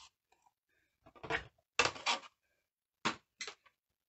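A handful of short knocks and clatters from die-cutting plates and the die being handled and set down on a desk, in small groups about a second apart.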